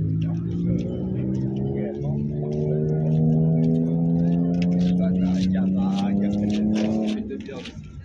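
A motor vehicle's engine running steadily, its pitch rising slowly for several seconds as it speeds up, then fading away shortly before the end.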